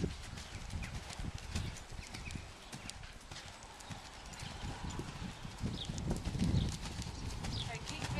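Ridden horse trotting on a sand arena surface: a steady run of soft, muffled hoofbeats.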